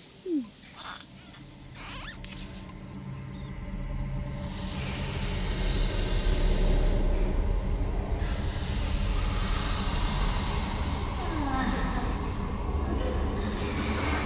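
Soundtrack drone: a low steady tone swelling in over several seconds, with a breathy hiss above it, after a few short clicks at the start.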